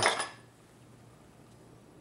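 The end of a spoken phrase, then near silence: faint room tone with a steady low hum.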